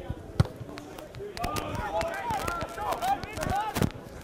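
Rugby players shouting short calls on the pitch, several rising-and-falling shouts in the second half, with a sharp knock about half a second in and scattered thuds of play.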